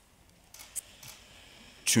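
A pause in a man's speech: faint room tone with a few soft clicks about half a second in, then his voice resumes just before the end.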